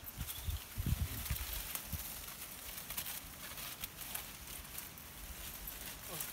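Bramble canes and leaves rustling and crackling as they are gripped and bent by hand, with a few low rumbles in the first two seconds.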